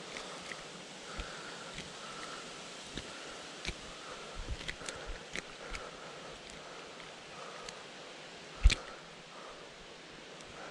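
Scattered light clicks, taps and rustling as a just-landed largemouth bass hangs on the line and is handled, with one sharp knock near the end as the fish is taken in hand.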